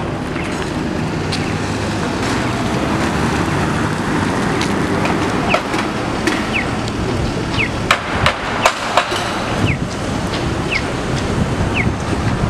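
City street and construction-site noise: a steady traffic rumble, with a few sharp knocks or clanks about two-thirds of the way in and short high chirps about once a second through the second half.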